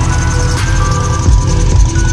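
Background music: sustained synth-like notes over a deep, pulsing bass.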